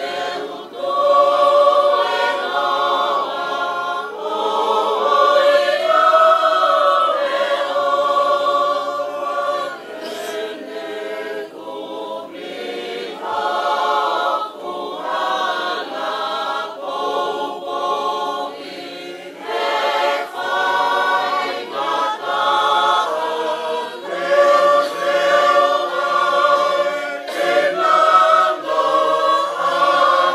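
A choir singing a Tongan song in harmony, in long held notes phrase after phrase, with short breaks between the phrases.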